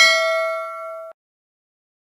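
A single bright bell ding, a notification-bell sound effect for the bell icon being clicked. It rings with a few clear tones that fade for about a second, then cuts off abruptly.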